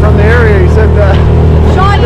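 A small boat's motor running steadily under way, with voices talking over it.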